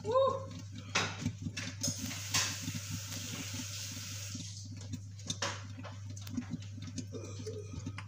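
Thick pepper sauce boiling hard in a covered frying pan, bubbling and spitting against the glass lid with many small irregular pops. A hiss rises from about two seconds in and fades out a couple of seconds later. A steady low hum runs underneath.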